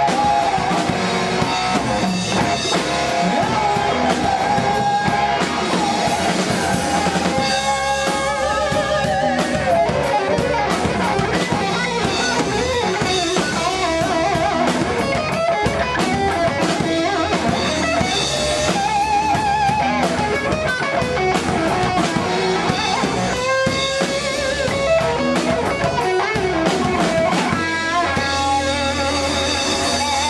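Live rock-blues band playing: an electric guitar lead of wavering, vibrato-laden held notes over bass and a drum kit.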